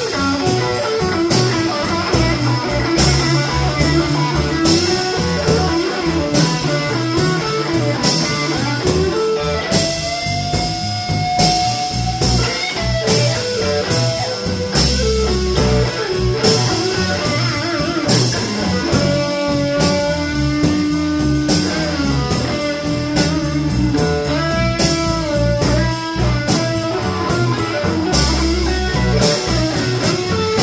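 Live blues band playing an instrumental stretch with no singing: electric guitar to the fore over bass guitar and a drum kit keeping a steady beat.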